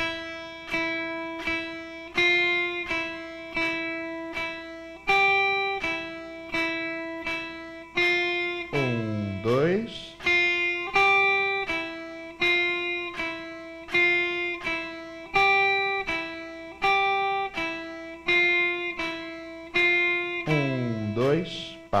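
Electric guitar playing a simple reading exercise on the open high E string: single picked notes E, F and G in steady quarter notes at 80 BPM, mostly on E. A metronome clicks along. Near the end a longer held note closes the line.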